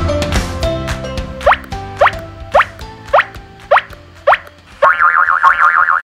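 Light, playful end-credits background music. Its percussion fades away in the first second or two, then comes a string of six quick rising pitch slides about half a second apart, and a fast wobbling warble near the end.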